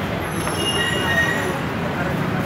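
High-pitched squeal of a metro train's wheels, several thin steady tones starting a moment in and fading near the end, over street and crowd noise.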